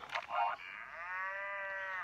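A young child's drawn-out moan, a couple of short sounds and then one long held whimper that rises a little and sinks again: the toddler is in pain from a stomach ache.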